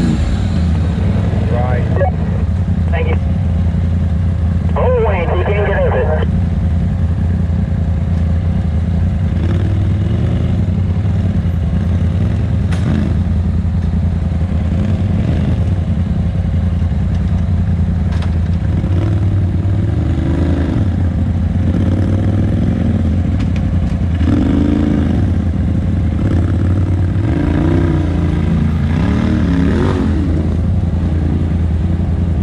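Polaris RZR side-by-side engine idling steadily, heard from inside the cab, with a few short rising-and-falling sounds over it around the first six seconds.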